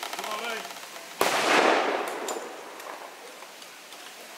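A single loud blank gunshot about a second in, fading away over about a second. It follows a brief shout and a fast rattle of smaller reports.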